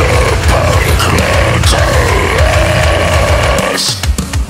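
Deathcore song with fast, dense kick drums and distorted guitars under a harsh extreme-metal vocal. The drums cut out abruptly just before the end.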